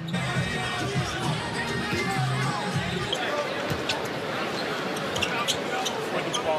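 Basketball arena din during live play: a crowd murmuring with music over the PA, and a basketball bouncing on the hardwood court.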